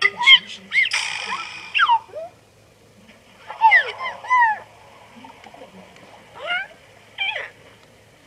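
Squeaky cartoon vocal sounds from puppet characters: chirps that slide up and down in pitch, in several short bursts with pauses between.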